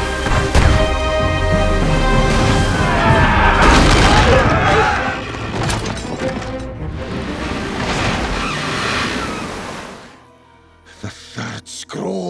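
Dramatic orchestral film score mixed with the booms and crashes of a sea battle between sailing ships. The sound fades out about ten seconds in, leaving a few faint knocks.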